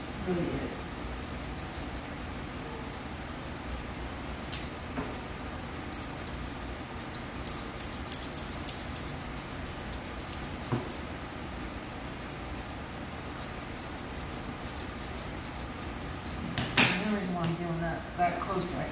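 Grooming shears snipping through a dog's coat: runs of light, quick metallic clicks, thickest in the middle, over a steady room hum. A short spell of voice comes near the end.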